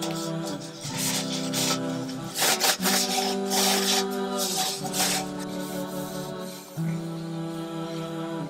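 Vocals-only nasheed with long held notes that change pitch every second or two. Over it come several short stretches of rubbing and handling as a cloth wipes down a metal basket.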